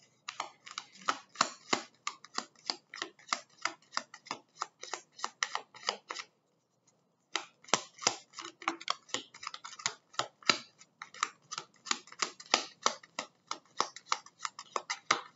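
A deck of oracle cards being shuffled by hand: rapid card slaps and clicks, several a second, stopping briefly about six seconds in before the shuffling resumes.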